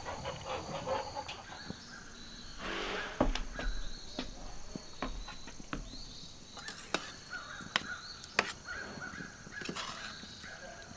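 A metal spoon stirring beans in a stainless steel pan on a grill, with about four sharp clinks against the pan in the second half, over a faint steady high-pitched drone.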